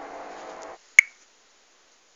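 Steady outdoor background noise cuts off abruptly about three quarters of a second in, at a cut in the recording. About a second in, a single sharp click rings briefly, the loudest sound here.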